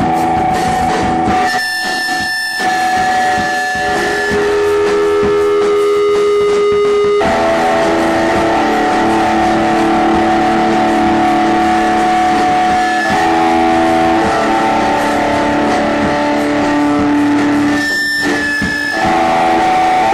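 Live rock music dominated by sustained electric guitar chords, each held for several seconds, changing abruptly twice mid-way, with brief thinner passages near the start and near the end.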